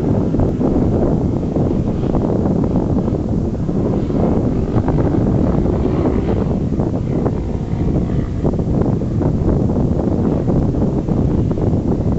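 Wind buffeting the camera microphone: a steady, loud, low rumble of noise.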